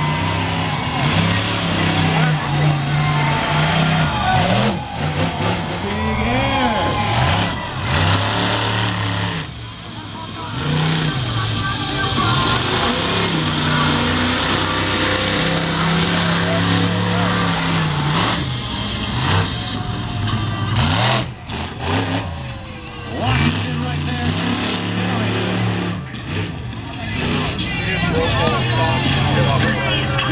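Incinerator monster truck's supercharged V8 engine revving hard through a freestyle run, its pitch repeatedly climbing and falling as the throttle is worked, with brief lulls about ten and twenty-one seconds in.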